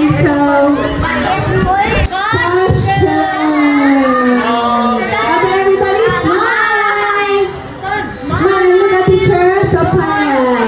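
Many children's voices at once, chattering and calling out over each other, some in drawn-out, sing-song tones.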